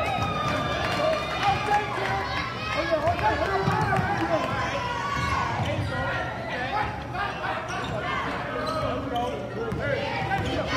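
Many voices of spectators and players talking and shouting over each other in a gym during live basketball play, with a basketball being dribbled on the hardwood floor underneath.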